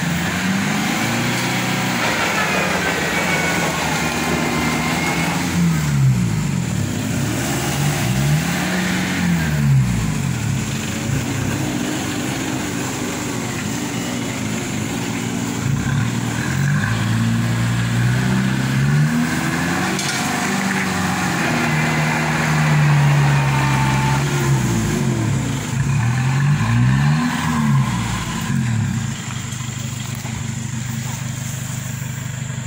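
Vehicle engines revving hard again and again, the pitch rising and falling with each push, as a four-wheel-drive pickup tows a loaded lorry through deep mud.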